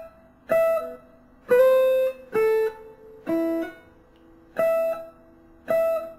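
Single notes picked one at a time on an electric guitar, a slow six-note phrase in E Phrygian. It starts on a high note, steps down through three lower notes, and returns to the high note twice near the end. Each note is short and stopped before the next.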